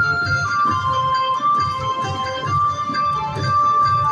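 5 Dragons Rapid slot machine playing its free-games bonus music while the reels spin: a melody of long held notes over a pulsing low beat.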